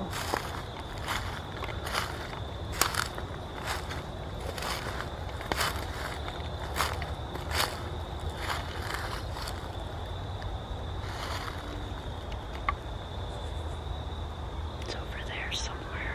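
Footsteps crunching through dry leaves and brush, irregular steps about once a second that thin out in the last few seconds, over a steady faint high-pitched tone.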